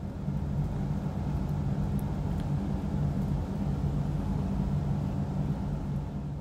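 Steady low mechanical hum with a few held low tones, unchanging throughout.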